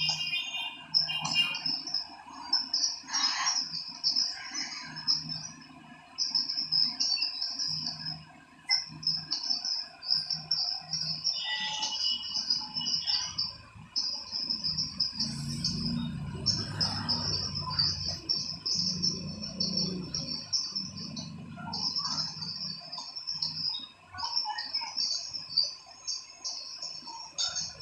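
Insects chirping in long, rapidly pulsed high trills, repeated over and over with short gaps between them. A low murmur comes in for a few seconds in the middle.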